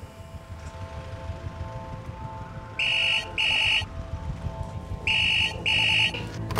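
The emergency department's wall-mounted priority phone ringing for an incoming priority call: two electronic double rings, the first about three seconds in and the second just before the end. The rings are steady and high-pitched.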